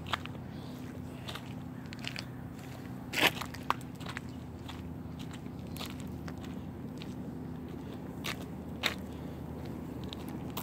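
Handling noise from a handheld phone jostled against clothing while walking: scattered sharp clicks and crackles, the loudest about three seconds in and near the end, over a steady low hum.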